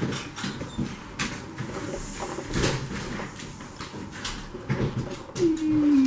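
Diced pieces tipped and pushed off a flexible plastic cutting mat into a salad bowl: a run of light taps and clicks as they drop and the mat knocks. Near the end, a short falling voice-like tone.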